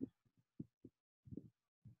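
Near silence, broken by a handful of faint, very short low thumps spread through it.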